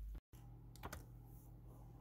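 Near silence: a low steady hum with a few faint light clicks about a second in.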